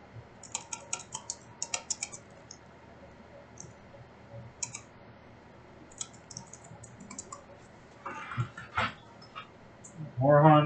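Typing on a computer keyboard: quick, light clicks in short irregular runs with pauses between them. Near the end come a brief rustle and a couple of soft knocks.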